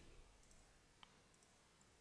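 Near silence: room tone, with one faint computer mouse click about a second in.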